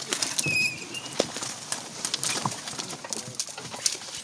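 Dry twigs and branches crackling, snapping and scraping against a canoe's bow as it is forced through dense brush: a run of irregular sharp cracks and rustles.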